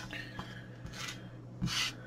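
Faint handling noise of a plastic display housing being turned over and shifted on a cutting mat: a small click at the start, then a brief soft rub near the end.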